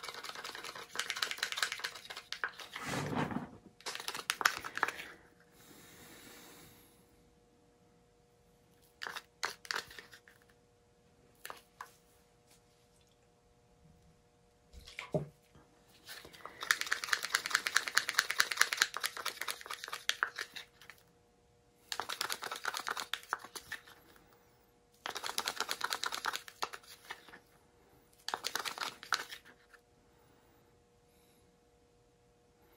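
Paint being stirred with a stick in a small plastic cup, thinned with water: bursts of rapid scraping and clicking lasting a few seconds each, with pauses and a few single knocks between them.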